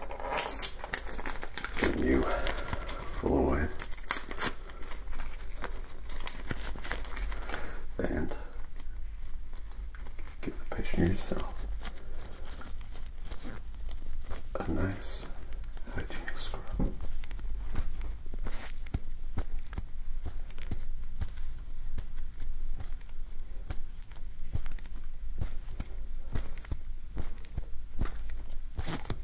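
Medical glove crinkling and rubbing close to the microphone, a dense run of small crackles and rustles.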